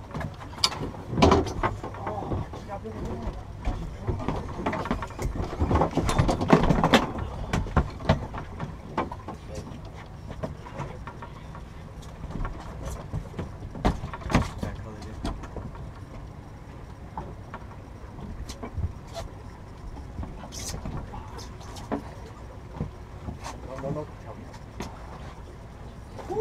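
Anglers cranking fishing reels while fighting hooked yellowtail from a boat, with frequent sharp clicks and knocks of gear, over a steady low hum. Indistinct voices come through now and then.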